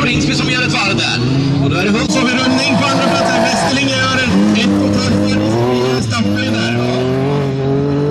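Several bilcross race cars' engines revving on a dirt track, their notes rising and falling as they accelerate and lift off.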